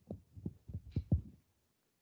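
Dull, low knocks picked up by a lectern microphone, about five irregular thumps in the first second and a half, as the lectern or the microphone is bumped and handled.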